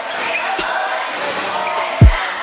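Gymnasium crowd murmur with a single deep thump about half a second in: a basketball bouncing on the hardwood floor. Another thump comes right at the end.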